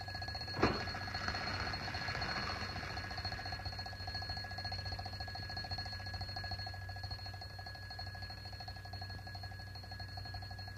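Mechanical alarm clock bell ringing with a rapid, steady trill, over the hum of an old film soundtrack. A sharp click about half a second in.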